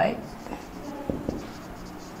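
Felt-tip marker writing on a whiteboard in short strokes, with a few light taps of the tip against the board.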